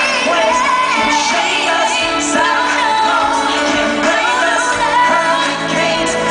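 Live pop duet: a male singer's voice carrying the melody over instrumental accompaniment, loud and steady throughout.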